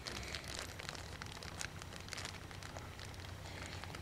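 Faint, irregular crinkling and crackling of a plastic bag being handled as someone struggles to open it.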